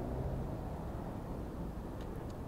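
Faint, steady low rumble of outdoor background noise, with no distinct events.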